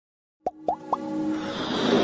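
Animated logo intro sound effects: three quick rising plops, each a little higher than the last, followed by a swelling whoosh that builds into music.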